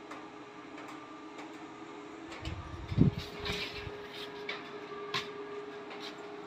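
A low steady hum with shuffling knocks, a single loud thump about three seconds in, and a sharp click near the end.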